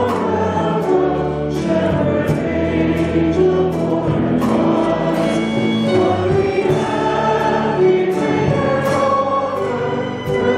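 Many voices singing a hymn together, with long held notes that change every second or so.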